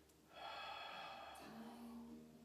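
Soft background music with steady held tones, and a person's audible breath starting about half a second in.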